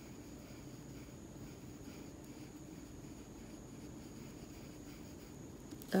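Faint scratching and dabbing of a fine paintbrush laying thick black acrylic paint onto a wooden earring blank, over a steady low hum and a thin high whine.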